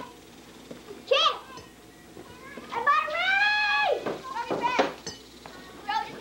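High-pitched children's voices calling out during outdoor play. There is a short rising shout about a second in, then one long drawn-out yell lasting about a second, and another short call just after it.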